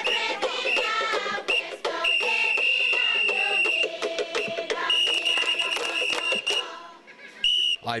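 Voices and singing from a gathered crowd, with a high, steady whistle-like tone held twice, each time for about a second and a half.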